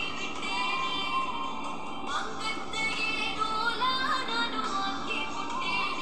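A Tamil film song playing: a voice singing long, held and sliding notes over instrumental backing.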